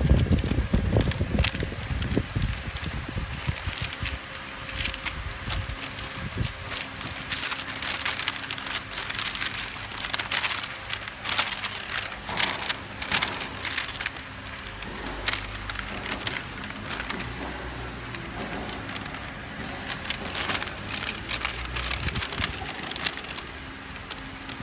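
Paper label web being handled and pulled by hand while it is threaded through a labeling machine's rollers: irregular crinkling and rustling full of sharp crackles, with a low rumble through the second half.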